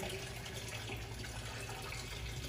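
Stream of water running from a clear PVC hose into a bucket of water, with a steady low hum underneath. The Shurflo pump is still purging air from the line, before full pressure builds.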